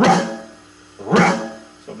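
Electronic drum kit pad struck with a stick, sounding a pitched drum tone: two accented whip strokes about a second apart, each ringing and dying away.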